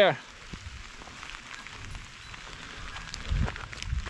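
Steady rain falling, an even hiss with scattered faint drop ticks, and a few low thuds near the end.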